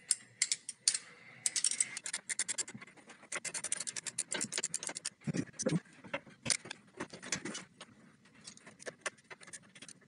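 Steel wrench clicking and scraping on the drag link of the steering linkage as it is fitted and worked to turn the adjuster: a run of quick, irregular metal clicks, with a couple of heavier knocks about five and a half seconds in.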